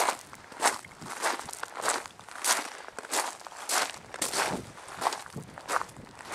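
Footsteps through dry bog grass and low brush, a swishing crunch about twice a second.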